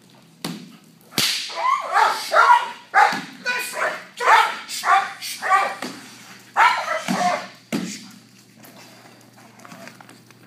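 German Shepherd barking in a rapid run of loud, aggressive barks at the agitator during protection work, lunging on the leash, from about a second in to about eight seconds. A sharp crack sounds just before the barking starts.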